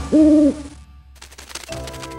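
A cartoon owl's hoot: one short, steady call right at the start. After a brief lull, light tinkling and chime notes come in near the end.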